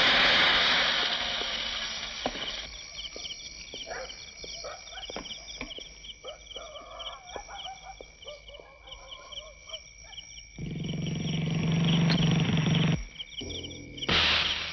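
Film sound effects: a loud rushing noise that fades over the first two seconds, then high, evenly repeating chirps with scattered clicks and knocks, then a loud low rumble for a couple of seconds near the end.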